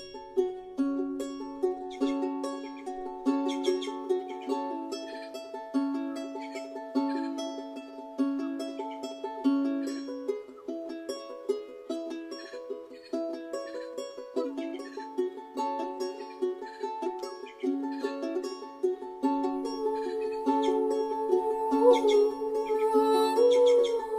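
Charango, a small ten-string Andean lute, plucked in a steady, repeating fingerpicked pattern of a few notes a second. A woman's sung voice enters near the end with a held note.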